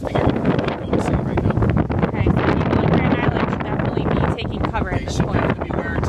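A man talking, his words indistinct, over a steady rushing noise inside a car.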